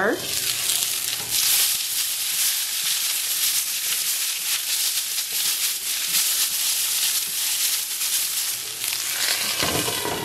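Asparagus spears sizzling and crackling in hot oil in a skillet as they are turned with tongs. The popping comes from rinse water left on the spears hitting the oil.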